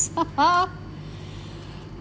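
A woman's short laugh near the start, then quiet room tone with a low steady hum.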